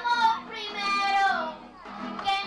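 A song: a high singing voice holds long notes and slides down about a second in, over a lower steady accompaniment.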